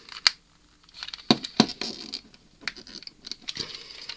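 Hard plastic clicking and rubbing as fingers pry at a Transformers Generations Goldfire toy car's clipped-in door panel, trying to unpeg it. A few sharp clicks stand out, about a quarter second in and around a second and a half in. The door clip is tight and does not come free.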